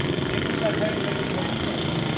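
Steady vehicle and road noise, with indistinct voices in the background.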